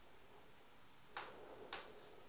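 Two sharp clicks about half a second apart, over faint room tone.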